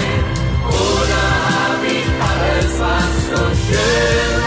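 A pop ballad with a full band playing and choir-like vocal harmonies singing without clear lyrics.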